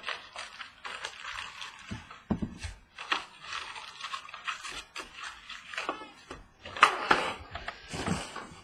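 A cardboard trading-card hobby box being opened and its wrapped packs pulled out and set down on a tabletop: irregular rustling, scraping and knocks, loudest about seven seconds in.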